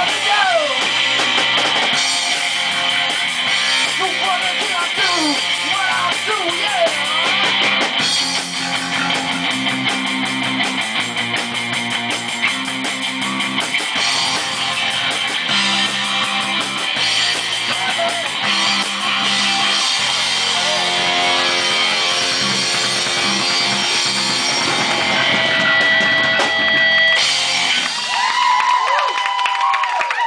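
Live punk rock band playing loud and fast, without vocals: distorted electric guitar, bass guitar and a Ludwig drum kit. Near the end the bass and drums drop away and a single held guitar note rings on as the song finishes.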